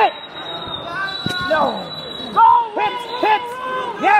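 Men shouting in a gym during a wrestling takedown: a few sharp, rising-and-falling yells from the sideline, with a single knock on the mat about a second in. A faint, steady high tone runs underneath for about two seconds.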